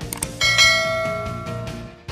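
Subscribe-button animation sound effect: two quick mouse clicks, then a bright bell ding about half a second in that rings and fades away, over background music.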